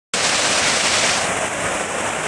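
Waterfall cascading over rocks into a pool: a steady, loud rush of water.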